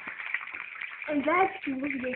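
Quiet, indistinct speech that starts about a second in, over a faint background hiss.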